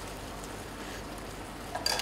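Steady soft hiss of a simmering stew pot, then near the end a short slurp as sauce is sipped from a spoon.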